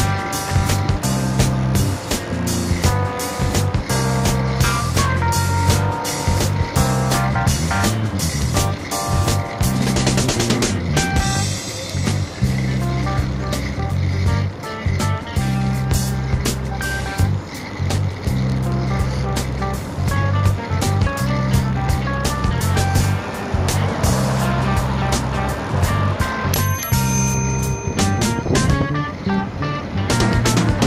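Background rock music with a steady drum beat, a bass line and guitar.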